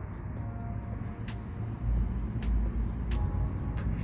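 A low rumble that grows louder about two seconds in, with faint music underneath and a few light clicks.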